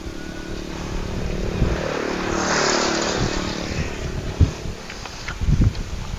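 A vehicle driving past, its engine and road noise swelling to a peak about halfway through and then fading away. A few soft knocks follow near the end.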